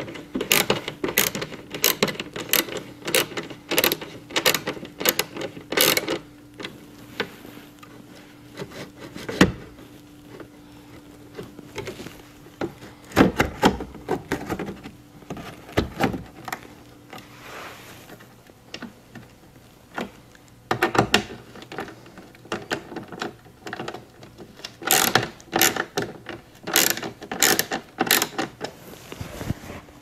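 Hand ratchet clicking in quick runs as the factory bolts are tightened, with pauses between runs and a few scattered single knocks. A faint steady hum sits underneath at first.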